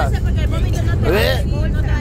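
Steady low rumble of road and engine noise inside a moving vehicle's cabin, with a voice heard briefly at the start and again about a second in.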